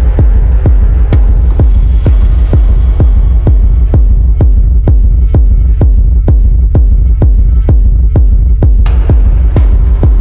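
Dark minimal techno track: a steady kick drum at about two beats a second over a continuous deep bass hum, with a bright noise sweep that fades out about two to three seconds in and a short hiss burst near the end.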